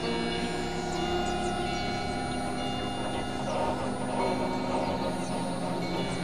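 Several music tracks playing over one another, merging into a dense, steady wash of sustained droning tones.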